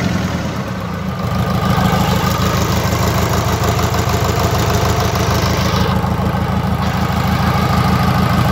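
Yanmar 4CHK four-cylinder marine diesel engine idling steadily on a test run.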